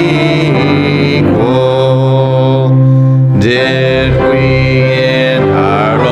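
A church congregation singing a slow hymn with instrumental accompaniment, in long held chords over a steady low bass note. The chord changes about one and a half seconds in and again at three and a half seconds.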